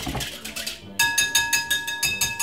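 Wire whisk beating egg-and-milk batter in a glass bowl. From about a second in it strikes the bowl rapidly and evenly, and the glass rings at the same few pitches with every stroke.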